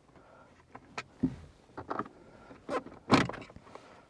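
A scattering of short plastic clicks and knocks as the dash-top clock display unit of a 2010 Ford Fiesta is worked loose and lifted out of its housing by hand. The loudest knock comes about three seconds in.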